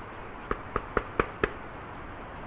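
Knocking on a door: five quick, sharp knocks at about four a second.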